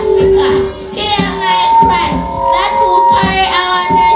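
Children singing with a woman's voice leading on a microphone, over music with long held notes and a steady beat.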